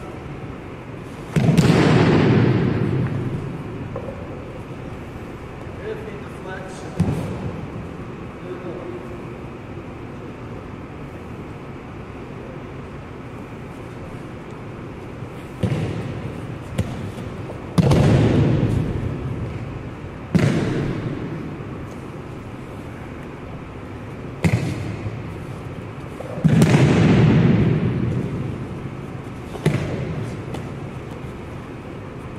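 Heavy thuds of a body slamming onto a wrestling mat as an aikido partner is thrown and takes breakfalls, about eight impacts that echo around a large gym. The heaviest come about a second and a half in, near the middle and near the end.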